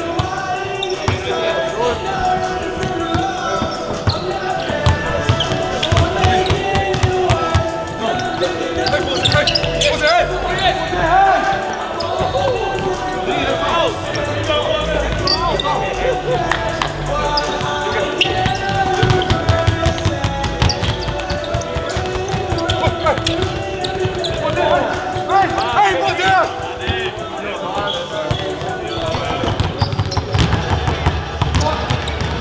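Several basketballs bouncing on a hardwood court, irregular thuds throughout, over indistinct voices and music.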